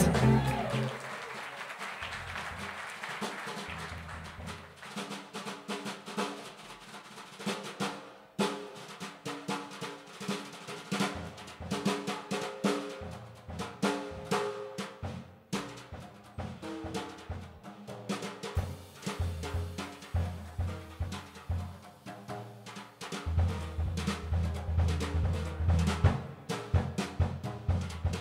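Live jazz combo playing an instrumental intro, led by a drum kit with snare and cymbal hits over pitched notes. A loud opening chord dies away in the first two seconds, and the upright bass comes in strongly about 23 seconds in.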